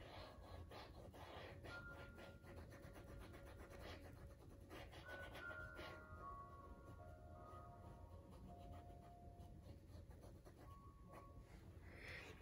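Near silence: faint soft background music with long held notes, and the faint scratch of a small paintbrush stroking acrylic paint onto canvas, mostly in the first half.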